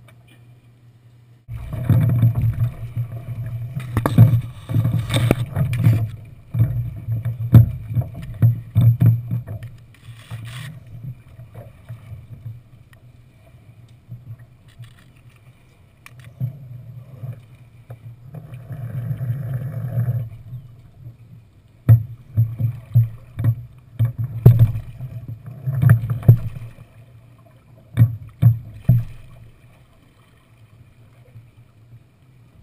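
Knocks, thumps and rattles from crew and gear moving about in a small wooden-floored sailing dinghy, picked up through the hull with a low rumble. They come in loud, irregular bouts that start suddenly after a second and a half, ease off for a few seconds in the middle, and pick up again near the end.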